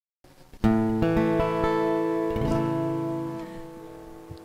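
Acoustic guitar strummed a few times, with chords struck over the first two and a half seconds and then left to ring, fading toward the end.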